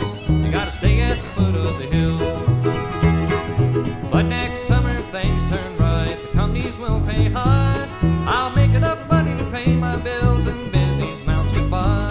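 Upright double bass plucked in a steady bluegrass beat, about two low notes a second, under an instrumental bluegrass band break with string lines sliding in pitch above it.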